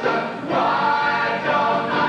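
Stage-musical cast of mixed male and female voices singing together in chorus, holding long notes after a brief dip just after the start.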